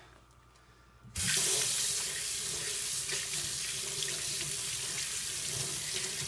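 Faucet turned on about a second in, its water then running steadily into a stainless steel sink and over soapy hands as the lather is rinsed off.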